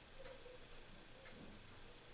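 Near silence: faint room tone with a few faint ticks about a second apart.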